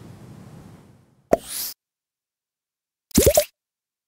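Cartoon-style sound effects for an animated title card: a short pop with a rising swish about a second in, then a quick rising bubbly 'bloop' a little after three seconds.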